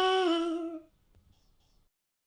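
A high-pitched cartoon character's voice holds the final sung note of the song, steps slightly down in pitch, and fades out about a second in.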